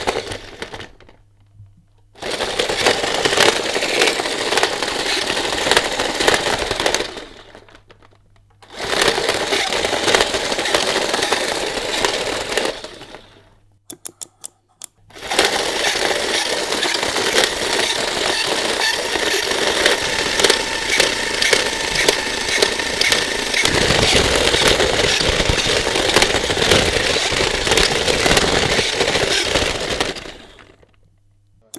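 A toy's small electric motor and plastic gears driven at high voltage, running fast with a dense rattling clatter. It runs three times, starting about two seconds in, again near nine seconds and from about fifteen seconds on, the last run the longest.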